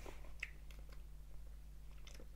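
Faint wet mouth and lip clicks, a few scattered, as a taster works a sip of whisky around his mouth, over a low steady hum.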